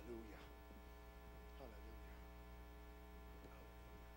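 Near silence: a steady low electrical mains hum, with a few faint voices in the background.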